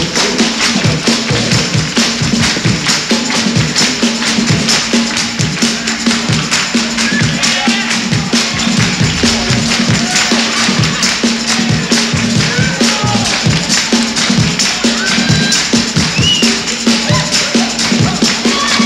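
Live funk band playing with a steady beat: drums, electric guitar, keyboard and horns, with a held low note running underneath.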